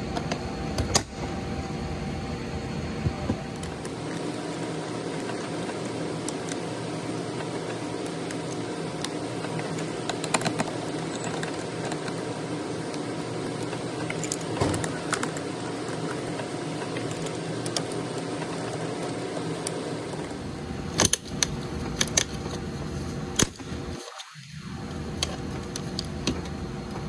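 A plastic driver's door switch panel being pried out of the door trim: scattered sharp clicks and rattles of clips and plastic, coming thick near the end, over a steady background hum.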